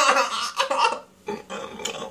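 A man laughing briefly, breaking off about a second in.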